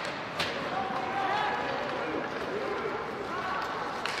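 The sound of an ice hockey game in a rink. There is one sharp knock from play on the ice about half a second in, then voices call and shout across the arena over the steady rink noise.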